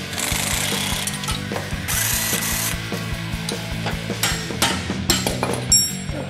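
Cordless power tool spinning out the bolts of a steel differential cover on a 14-bolt axle, in two short runs, followed by a string of sharp metal clicks and knocks.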